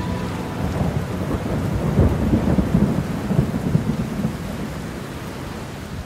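A low, rumbling wash of noise with no music or voices, like rolling thunder, swelling about a second in and slowly fading toward the end.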